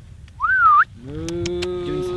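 A short human whistle to call the cattle, rising then wavering, then about a second in a cow lets out one long, steady moo.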